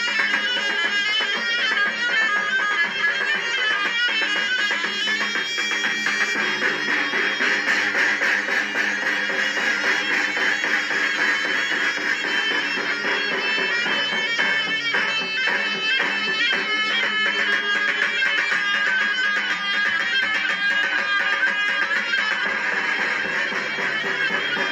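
A zurna playing a shrill Turkish folk dance tune (oyun havası) without a break, with a davul bass drum beating along; the sound is thin, with little bass.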